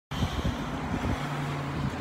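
Wind buffeting a handheld phone's microphone, heard as a steady noise with irregular low thumps; a faint low steady hum joins about halfway through.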